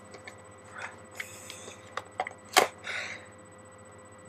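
Glued package being torn open by hand: crinkling and rustling of the packaging with scattered sharp snaps, the loudest about two and a half seconds in, as the glued seal is forced apart.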